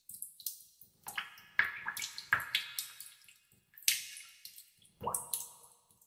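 Water dripping in a cave: irregular drops falling into water, each a sudden plink with a short echoing tail, some close together. The loudest drops come about one and a half and four seconds in.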